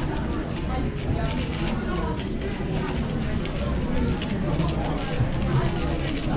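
Indistinct voices of people talking in a busy room, with scattered light clicks and clatter.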